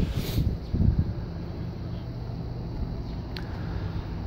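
A steady low mechanical hum, with a short rush of noise just after the start and a faint click about three and a half seconds in.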